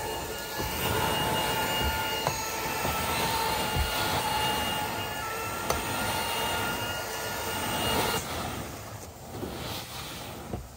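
Carpet steam-cleaning extraction wand under vacuum suction, a steady rushing roar with thin whistling tones as it is pushed across the carpet. The whistle and roar drop off about eight seconds in.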